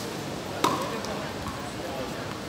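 A tennis ball struck once by a racket, a single sharp pop about two-thirds of a second in, over the chatter of passers-by.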